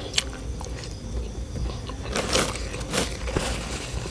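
A person chewing and biting food close to the microphone, with irregular wet smacks and crunches. The loudest come a little over two seconds in and at about three seconds.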